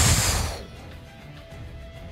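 Explosion sound effect for a cannon blast, loud at the start and dying away within about half a second, followed by faint background music.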